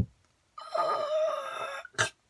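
A person's long, strained groan held for about a second and a half, voicing the teddy bear 'Dad' collapsing. There is a sharp thump at the start and another at the end.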